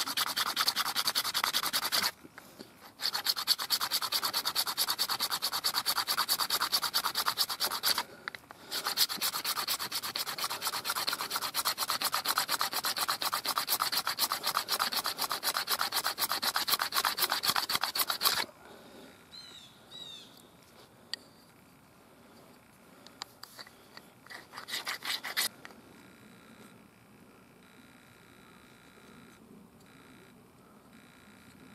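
Deer leg bone being ground back and forth on an abrasive stone to flatten it into blank stock for points: fast, even rasping strokes. They come in three long runs with two brief pauses and stop about 18 seconds in. After that there are only a few lighter scrapes.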